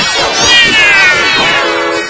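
Heavily pitch-shifted, effects-warped pop song: a distorted voice holds one long note that slides steadily downward in pitch, giving it a meow-like quality, with steady lower tones underneath near the end.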